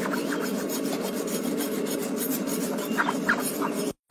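Farrier's hoof rasp filing a horse's hoof, a fast run of scraping strokes.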